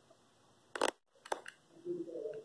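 A few brief clicks and rustles of objects being handled on a workbench, a pair of sharper ones a little under a second in and smaller ones just after, otherwise quiet.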